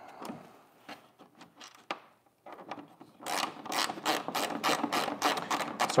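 Ratcheting driver clicking as screws are tightened. There are a few scattered clicks and taps at first, then from about halfway a fast, even run of clicks, roughly five a second.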